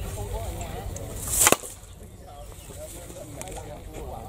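A fishing net being handled at the edge of a wooden platform: one brief swish that ends in a sharp knock about a second and a half in.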